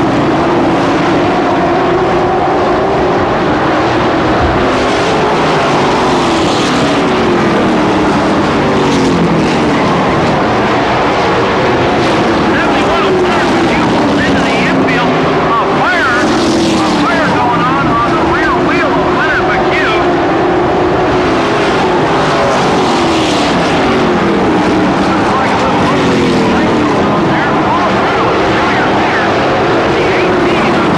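Several race trucks' engines running at speed around a paved oval short track. Their engine notes rise and fall in pitch every few seconds as the trucks go through the turns and pass by.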